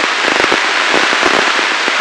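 Radio receiver static on the ARISSAT-1 amateur satellite downlink: a steady hiss crowded with crackling clicks. The satellite's signal is still weak because it is low in its pass.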